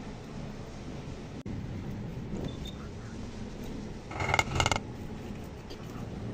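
Metal cake tin full of batter rattling against the counter in two short bursts about four seconds in: knocked to bring air bubbles up out of the batter.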